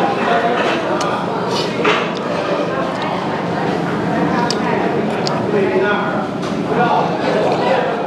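Indistinct chatter of voices in a small eatery, with a few light clicks of a metal spoon against a ceramic bowl, two of them near the middle.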